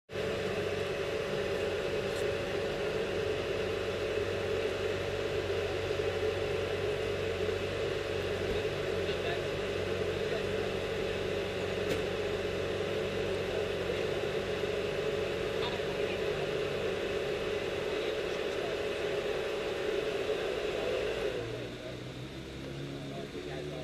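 A vehicle engine running steadily at idle, then winding down with a falling pitch about a second before the end as it is shut off.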